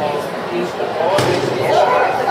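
A dog-agility seesaw (teeter) board bangs once against the ground a little over a second in, heard over steady voices and crowd chatter in a large hall.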